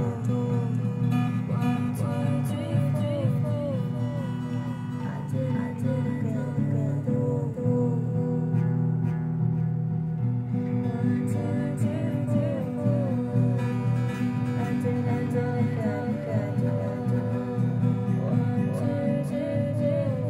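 Acoustic guitar being played continuously, with a voice singing along.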